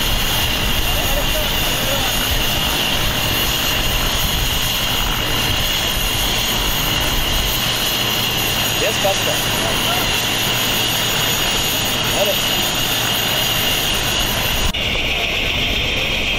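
Light turbine helicopter running on the ground, a steady engine and rotor noise with a high whine; the sound changes abruptly near the end.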